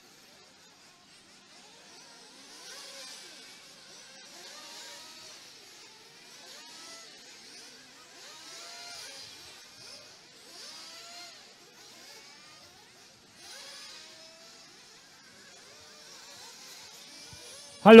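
Faint 1:8-scale off-road RC race buggies running on the track, their motors rising and falling in pitch again and again as they accelerate and back off. A loud voice calls out at the very end.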